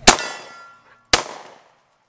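Two shots from a SIG P220 .45 ACP pistol firing 180-grain rounds, about a second apart, the first the loudest. After the first shot a steel target rings for about half a second.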